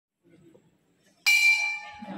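A single bright metallic percussion hit about a second in, with a bell-like ring that fades over about half a second, opening a piece of music.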